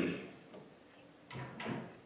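Handling noise on a handheld microphone as a sheet of paper is picked up: two short knocks with rustle about a second and a half in. A short vocal sound at the very start, the tail of a throat-clear or word, is the loudest moment.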